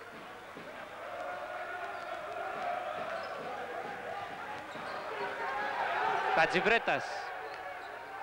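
A basketball dribbled on a hardwood arena floor over the noise of the crowd, which slowly grows louder; a man's voice breaks in briefly near the end.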